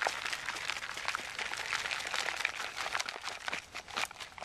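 Dirt and small stones being shaken through a homemade wire-mesh sifter, a dense, steady patter of many small clicks and rattles as soil sifts down to cover a buried trap.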